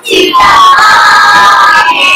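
A group of young children shouting together in one long, held cheer.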